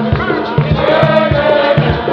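A group of voices singing a hymn together over a steady drum beat, in the manner of a West Indian Spiritual Baptist service.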